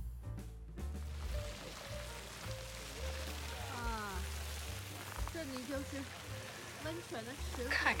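Steady hiss of flowing hot-spring water with a low rumble underneath, and faint voices in the second half. Music fades out about a second in.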